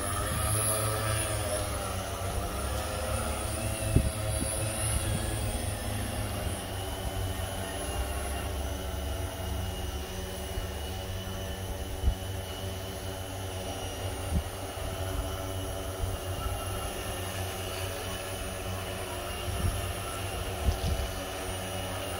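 A 1200 mm six-rotor hexcopter drone hovering: its propellers and motors give a steady, many-toned hum that wavers a little in pitch over the first several seconds, then holds steady, over a low rumble.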